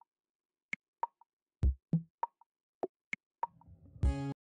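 Background music reduced to sparse electronic percussion: deep kick-drum thuds alternating with short pitched pops and clicks, about two a second, with a faint low swell near the end.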